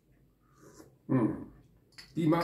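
A man takes a faint sip of coffee, then makes a short wordless vocal sound about a second in, a brief voiced 'mm' or 'ah'.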